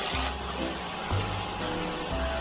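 Background music with sustained bass notes and short held notes above them.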